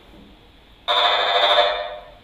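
A handheld RF meter's audio output buzzing loudly for about a second, starting abruptly near the middle and fading near the end. It is the sign of radio-frequency emission from a Gigaset AL170 DECT cordless handset searching for its unplugged base.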